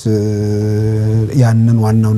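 A man's speaking voice drawing out one syllable at a steady pitch for over a second, then gliding into a second held sound.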